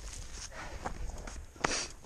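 Footsteps walking on a dry dirt trail, soft scuffs with one sharper scuff near the end.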